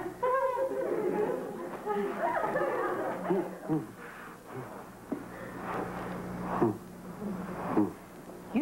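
Soft, wavering voices with giggling and laughter, over a steady low hum.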